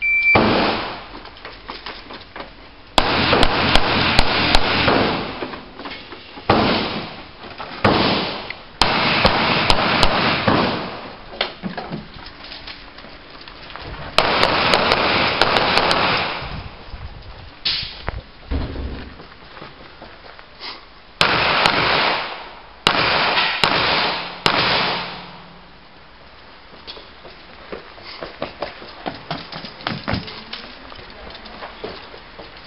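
A shot timer's short start beep, then a pistol fired in about six rapid strings of shots that run together in the echo, with pauses between strings as the shooter moves between positions.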